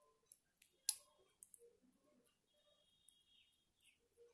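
Faint clicks of metal knitting needles touching as stitches are worked, with one sharper click about a second in. A thin, faint high squeak comes twice, briefly about a second in and again for under a second near the middle.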